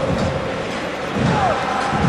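Football stadium crowd: a steady din of many voices from the stands, with faint shouts rising out of it.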